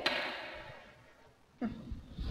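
A single sharp click, then a short pause with fading room tone, and a voice saying one word near the end.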